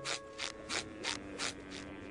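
Typing sound effect: a run of light clicks, about three a second, over a faint steady tone, as letters type onto the screen.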